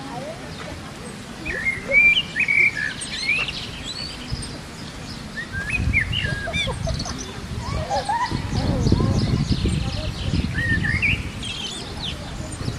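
Small birds chirping in short, rising and falling calls, heard in clusters about two seconds in, around six seconds and near the end, over a low rumbling background noise that swells a little past the middle.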